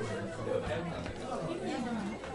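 Background chatter: several voices talking at once, none of them clear.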